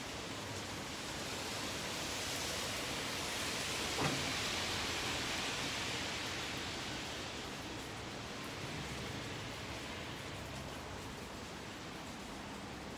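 Rain hissing steadily, swelling louder for a few seconds in the middle, with a single sharp click about four seconds in.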